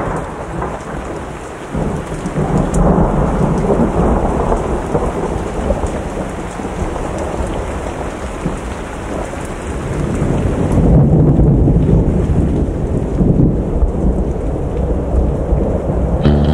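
A loud, steady low rumbling noise with a dense crackle over it and no music. It dips briefly about two seconds in and swells again around ten seconds in.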